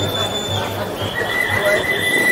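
A steady high-pitched tone that stops about half a second in, then a lower steady tone that starts a little after a second in and holds, over crowd chatter.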